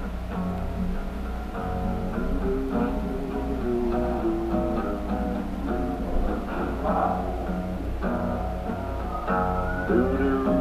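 Guitar playing an instrumental passage of a song without singing, a run of single picked notes stepping up and down in pitch.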